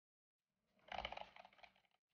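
A faint, short burst of quick key taps, as in typing on a keyboard, starting about a second in and lasting under a second.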